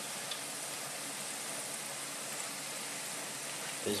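French fries with jalapeno and onion slices deep-frying in peanut oil, a steady sizzle of bubbling oil. The fries are near done, mostly floating as they crisp.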